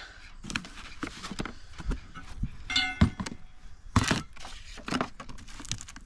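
Unpacking noise from a cardboard box: foam packing and cardboard rustling and scraping, with scattered knocks and thunks, the sharpest about three and four seconds in.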